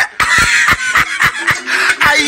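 A man laughing in short, rapid bursts, about four a second.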